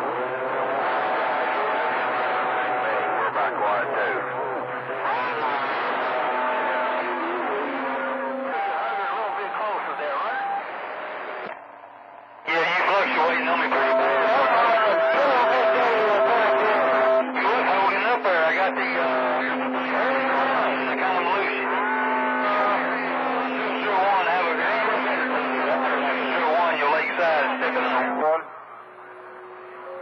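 CB radio receiving channel 28 skip: distant voices come through garbled and hard to follow, over steady whistle tones. The signal fades briefly just before halfway, comes back stronger, and drops again near the end.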